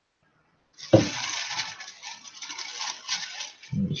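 A knock about a second in, then about three seconds of irregular rustling noise.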